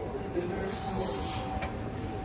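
A steady low rumble with a thin constant tone running under it, and faint voices murmuring.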